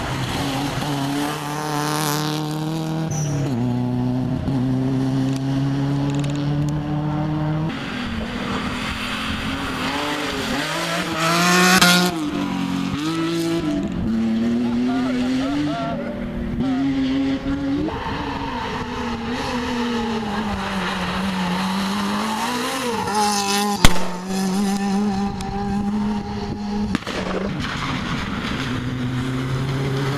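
Rally car engines revving hard and changing gear as cars race past on a special stage, the pitch climbing and dropping again and again. A single sharp crack about 24 seconds in is the loudest sound.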